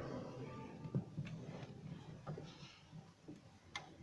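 Quiet room tone with a few faint, scattered clicks and taps, the sharpest about a second in and another near the end.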